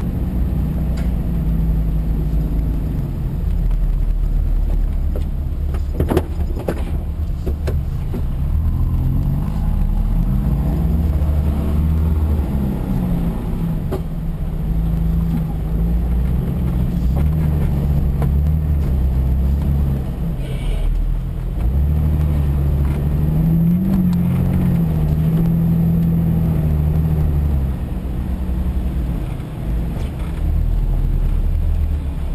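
Jeep engine running under load as it drives over rough ground, its pitch rising and falling repeatedly with the throttle. A few sharp knocks come about six seconds in.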